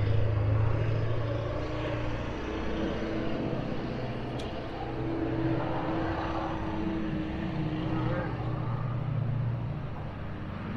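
An engine running steadily at a constant speed: a low hum with a steady higher tone above it.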